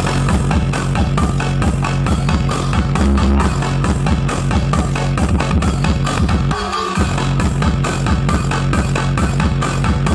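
Dance music with a steady beat and heavy bass, played loud through a large outdoor sound-system speaker stack. The bass cuts out briefly about seven seconds in, then comes back.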